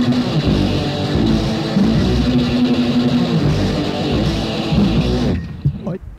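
Punk rock band with electric guitar and bass playing the closing bars of a song. The music cuts off about five seconds in, with one last short hit that rings out.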